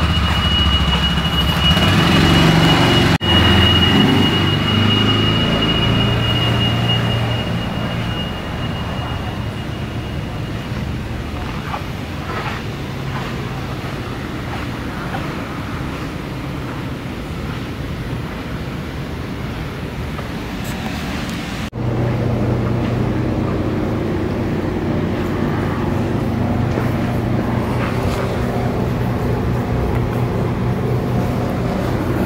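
An engine running at a steady speed, with no revving. A thin high whine runs through the first ten seconds or so, and the sound changes abruptly twice, at about three seconds and about twenty-two seconds in.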